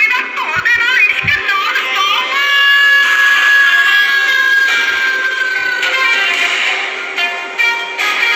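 A recorded song with a singing voice, played backwards as a clip to be guessed. The voice wavers for the first two seconds, then one long note is held until about six seconds in.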